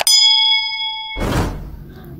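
A mouse-click sound effect followed at once by a bright bell ding, the notification-bell chime of a subscribe-button animation, ringing and fading over about a second. A short rushing noise then swells and fades.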